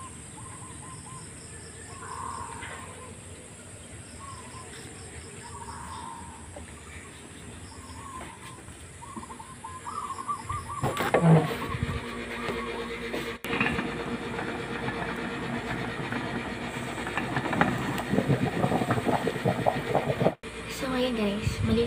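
Quiet outdoor ambience with faint bird chirps, then, from about halfway, a louder steady hiss and bubbling of a pot of rice boiling on the stove, steam escaping under the lid.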